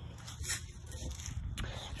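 Faint rustling and handling noise as a phone is moved and swung around, over a low steady hum.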